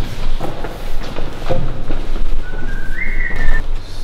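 A short two-note whistle, a lower note stepping up to a higher held one about two and a half seconds in, over scattered knocks and footfalls in a large room.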